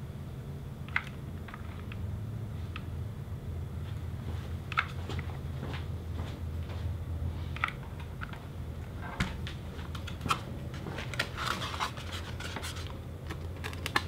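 Faint scratching and scattered light clicks of hot-gluing a paper-faced foam board rudder: a glue gun worked along the rudder's tabs, then the piece handled and pressed into its slots, with the clicks coming more often in the second half. A steady low hum runs underneath.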